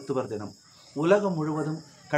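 Crickets chirping steadily in two high-pitched bands, under a woman talking in Tamil with a short pause in the middle.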